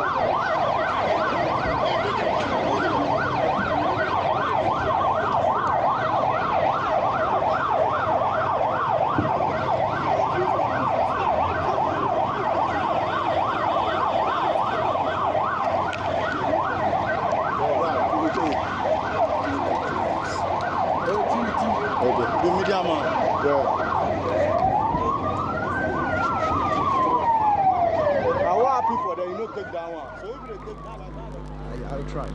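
A vehicle siren on a rapid warbling yelp. About 24 seconds in it switches to a slow wail that rises and falls every couple of seconds.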